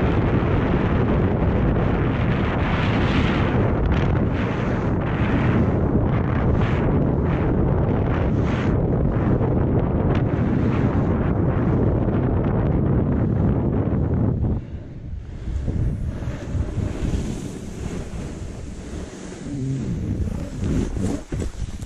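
Wind buffeting the microphone, with the rushing hiss of sliding fast over snow. Both are loud and steady, then drop noticeably quieter about three-quarters of the way through.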